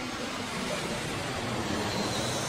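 Jet airliner engine noise from a green-screen airplane clip playing back: a steady, dense noise that grows slightly louder.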